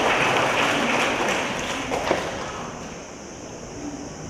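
Congregation applauding in a large, echoing church, the clapping dying away about three seconds in.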